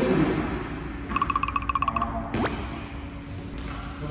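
Cartoon-style editing sound effects: a rapid run of high electronic blips lasting about a second, then a quick upward whistling pitch sweep, over faint background music.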